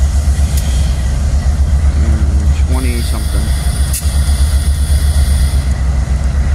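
Low, steady rumble of Canadian Pacific EMD diesel-electric locomotives idling in the yard. A faint high whine sits over it in the middle of the stretch.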